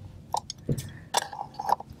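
Pliers and a rubber diaphragm being worked against the plastic body of a Whale Mark V marine toilet pump during reassembly: a few short clicks and handling noises, about four in two seconds.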